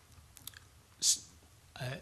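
A short pause in a man's speech with small mouth clicks, a brief breath drawn in about a second in, and a hesitant 'uh' near the end.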